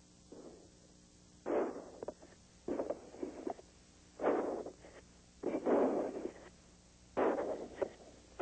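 Shuttle cockpit communications audio during ascent: about five short, garbled, muffled bursts, each under a second, coming through the radio loop with quiet gaps between them.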